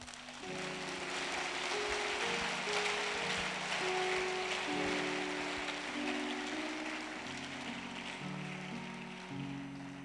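A keyboard plays slow sustained chords that change about every second, under a steady wash of crowd noise from the congregation that swells in about half a second in and eases off near the end.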